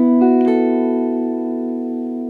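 Archtop jazz guitar sounding a four-note Cmaj7(♯11,13) chord voicing, the notes picked one after another from the lowest up over about half a second and then left to ring, slowly fading.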